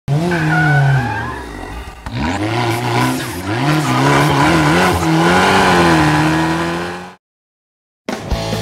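A car engine revving up and down at speed, its pitch climbing and dropping several times, which then cuts off suddenly about seven seconds in.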